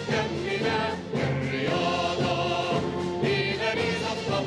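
Choir and symphony orchestra performing a song together, voices singing Arabic lyrics over strings and brass.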